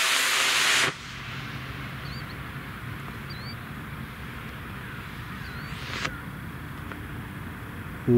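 Estes D12-5 black-powder model rocket motor hissing loudly under thrust, cutting off abruptly at burnout about a second in. Then quiet, with a few faint bird chirps and a brief faint pop about six seconds in, which falls at the motor's five-second delay and fits the ejection charge firing.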